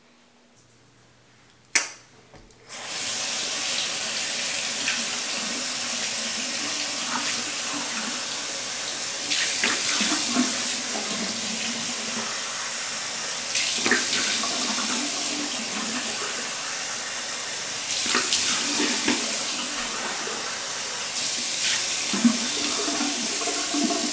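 Bathroom sink tap turned on with a sharp click about two seconds in, then running steadily, with louder splashing at intervals as water is splashed onto the face.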